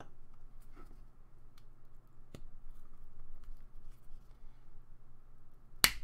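Header pins of a NodeMCU board being pressed into a white RoboDyn solderless breadboard: faint scraping and scattered small clicks of pins against the contact holes, with one sharp click near the end.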